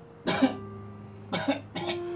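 Two short coughs about a second apart, the first louder, over soft background music with long held notes.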